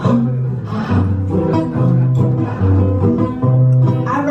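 Two acoustic guitars playing an instrumental passage: a strummed chord rhythm over prominent low bass notes that alternate between two pitches about every half second.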